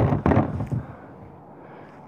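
Wooden board knocking and scraping as it is laid across the top of an RV roof unit: several quick knocks in the first second, then faint handling rustle.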